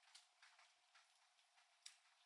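Near silence, broken by faint, irregular clicks a few times a second, with the sharpest one near the end.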